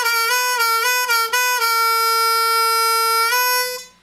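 Diatonic harmonica in A, hole 4 draw bent down a half step and released several times in quick succession, wailing on the bend. It then holds the bent note for nearly two seconds, releases it and stops near the end.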